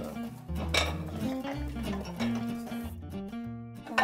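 Ceramic dinner plates clinking as they are lifted from a stack and set down on the table, over background music with a steady bass line.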